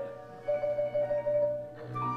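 Marimba struck with mallets: a short note at the start, then one mid-range note held as a quick mallet roll for just over a second.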